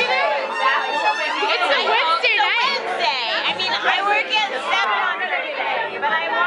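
Several people talking over one another in a room, a busy overlapping chatter.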